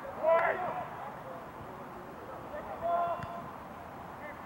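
Voices calling out across a soccer field: a loud shout shortly after the start and a shorter held call about three seconds in, over steady open-air field noise.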